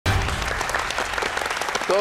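Studio audience applauding: dense, steady clapping.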